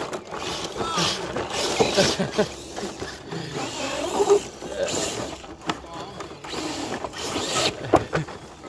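1/10-scale RC rock crawlers driving and ramming into each other over twigs and leaf litter: electric motors and gearboxes whining, with irregular clicks and knocks as the trucks bump, roll over and scrabble across the sticks.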